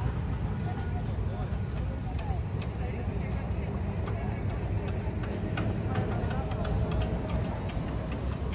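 Outdoor city-square ambience: a steady low rumble with distant voices, and scattered light clicks in the second half.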